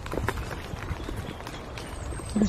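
Footsteps of a person walking on a paved lane: irregular soft knocks over a low rumble.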